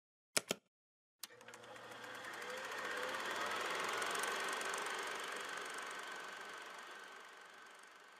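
A button clicks twice, then a fast mechanical rattle, like a small motorised machine running, swells up over a couple of seconds and slowly fades away.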